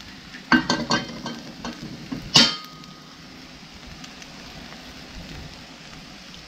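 Eggs and hen-of-the-woods mushrooms sizzling steadily in a frying pan, with brief clatter in the first second and one sharp clink of a utensil or plate against the pan about two and a half seconds in.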